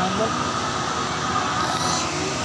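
Steady rushing background noise with a faint thin high tone held throughout, and a faint voice at the start.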